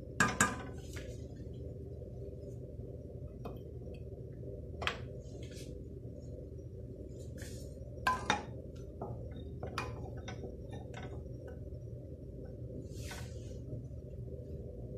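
Wooden spoon knocking and tapping against a steel pot while stirring hot milk: a pair of knocks at the start, a single knock about five seconds in, another pair about eight seconds in, then a few lighter taps, over a steady low hum.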